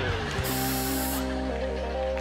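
A short hiss of a perfume atomizer spray, starting about half a second in and lasting under a second, over music holding a sustained chord.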